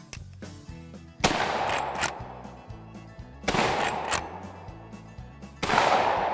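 Winchester Model 1886 lever-action rifle in .45-70 firing three shots about two seconds apart, each loud report echoing for most of a second, with a short click after each of the first two shots.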